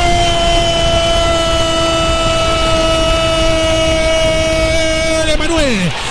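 A radio football commentator's goal call: one long, held shout of 'gooool' on a single high note, dropping in pitch and breaking off near the end, over broadcast crowd noise.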